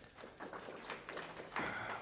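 Brief applause from a small audience, many hands clapping in a quick irregular patter.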